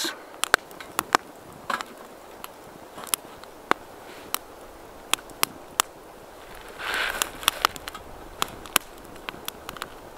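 Twig fire crackling inside a small wood-burning camp stove: sharp, irregular pops and snaps over a quiet background, with a brief rustle about seven seconds in.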